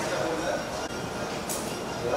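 Indistinct chatter of several voices over a steady haze of room noise, with a brief hiss about one and a half seconds in.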